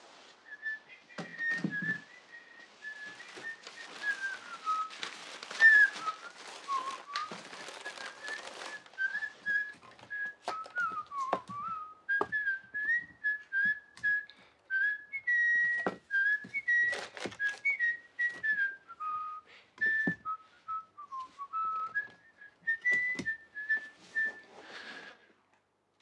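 A person whistling a wandering tune of held notes and slides, under scattered knocks and clicks of objects being handled and a stretch of paper rustling. The whistling stops shortly before the end.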